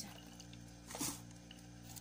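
Water poured from one plastic bottle into another plastic bottle holding a blended drink, over a steady low hum, with a short louder noise about a second in.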